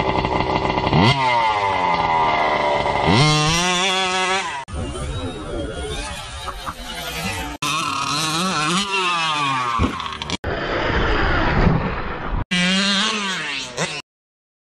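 Losi MTXL 1/5-scale RC monster truck's modified Rovan 45cc two-stroke engine with a tuned pipe, revving hard, its pitch repeatedly rising and falling. The sound is cut into several short pieces, each ending abruptly.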